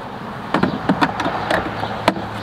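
Short plastic clicks and knocks of a Ryobi 40V battery pack being handled against the mower's hard-plastic battery compartment. A string of sharp taps begins about half a second in, over a steady low background hum.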